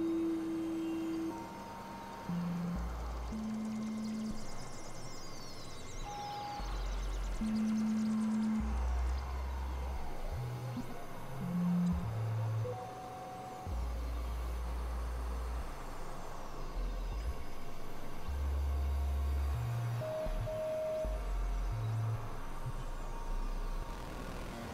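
Experimental synthesizer music: a sequence of separate held notes at shifting, unrelated pitches, mostly deep bass tones of about half a second to two seconds each, with a few higher single tones. Faint falling whistle-like glides and a steady hiss run over them.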